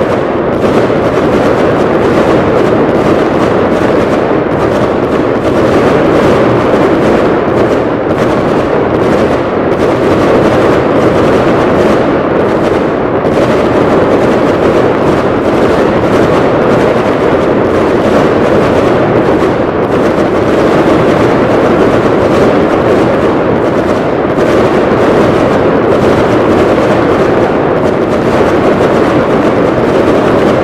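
A dense barrage of aerial firework shells bursting, the reports merging into one loud, steady rumble with no gaps.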